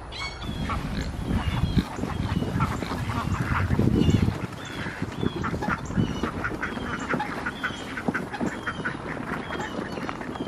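A loaded wheeled garden cart rumbling and rattling as it is pulled over grass and dirt, louder for about the first four seconds. Birds call repeatedly over it in short, falling notes.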